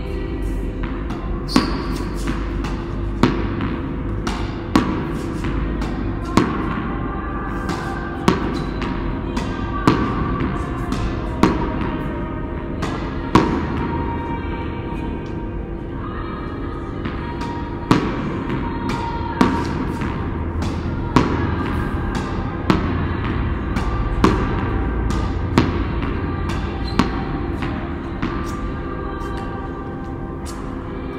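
Tennis ball struck by a racket over and over, one sharp hit about every second and a half, with a pause of a few seconds midway. Background music plays throughout.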